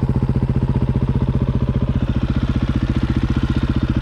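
450 dirt bike's single-cylinder four-stroke engine idling steadily with an even, rapid pulse.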